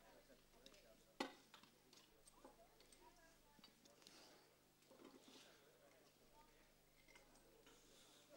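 Very faint clicks and clinks of hand tools working on a tractor engine under faint murmuring voices, with one sharp knock about a second in.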